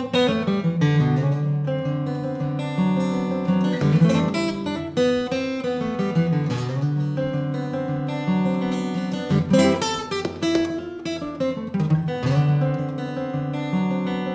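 Solo steel-string acoustic guitar playing chords, picked and strummed over a moving bass line.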